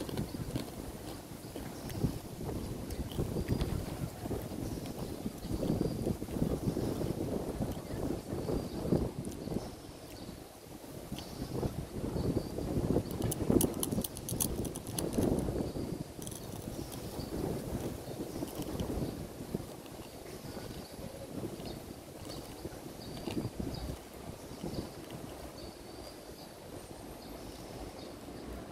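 Wind buffeting an outdoor microphone: low rumbling gusts that rise and fall every few seconds. A few faint sharp clicks come about halfway through.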